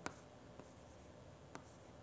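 Faint chalk writing on a blackboard: a few light taps and scrapes of the chalk.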